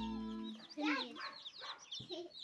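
A brood of baby chicks peeping, many short falling peeps overlapping, with a louder, lower call about a second in. Background music cuts off about half a second in.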